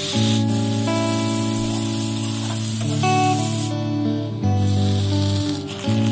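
Sliced onions sizzling in hot oil in a steel kadai, the hiss starting as they go into the pan and pausing briefly about two thirds of the way through, under loud background music.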